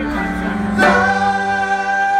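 Live band music over a stadium PA, heard from the crowd: a slow song in which a sung note is held, entering a little under a second in, over quieter backing that thins out near the end.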